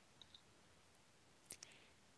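Near silence: faint room tone with a few small, soft clicks, a pair early and another pair about a second and a half in.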